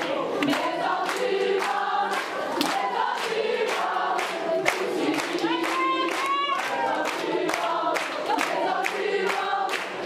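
A large group of voices singing together, with steady hand-clapping in time at about three claps a second.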